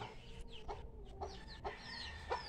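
Faint, short clucking calls of chickens, scattered through a pause in speech, with a few brief high calls that slide downward.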